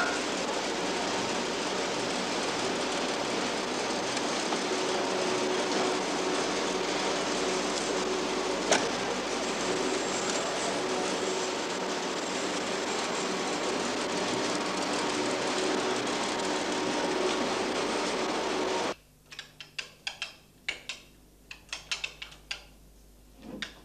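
Steady street noise, a dense hiss with a faint mechanical hum, with a single sharp knock about nine seconds in. Near the end it cuts off sharply to a quiet room where abacus beads click irregularly.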